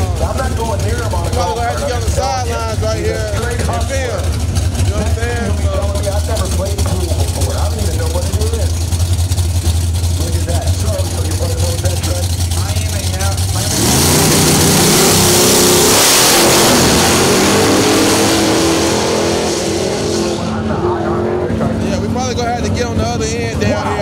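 Two drag cars rumble deeply at idle on the starting line. About fourteen seconds in they launch in a sudden loud burst of engine noise, the pitch climbing in steps as they shift gears. The sound fades over the next several seconds as they run down the strip.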